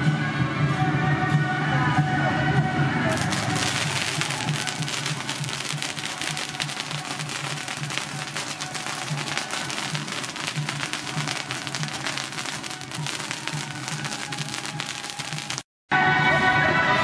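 A long string of firecrackers laid along the road going off: a dense, rapid crackle of small bangs that starts about three seconds in, runs for some twelve seconds and cuts off suddenly. Music plays underneath, clearest before the firecrackers start.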